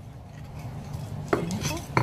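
A metal spoon scraping and clinking against a granite mortar as a chilli dipping sauce is stirred, with two sharp clinks in the second half.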